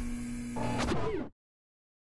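Tail of an electronic logo-intro sound effect: a held low tone under a hiss. Brief gliding tones join it just past the middle, then it cuts off suddenly.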